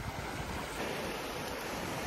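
Small waves washing onto a sandy beach: a steady, even hiss of surf.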